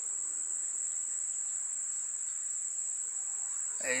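Steady, high-pitched drone of insects, one unbroken tone that never pauses.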